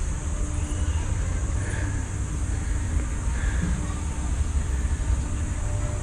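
Steady low rumble of outdoor background noise with a faint steady high hiss above it.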